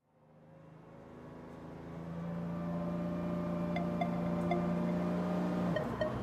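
Vehicle engine running steadily with a low hum, heard from inside the moving vehicle, fading in over the first two seconds. A few faint ticks come in the middle.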